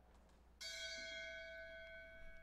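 A bell struck once about half a second in, ringing on with a slow fade, tolled in memory after a fallen officer's name is read.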